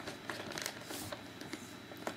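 Faint handling of a cardboard toy box: light scrapes and small taps as it is turned over in the hands.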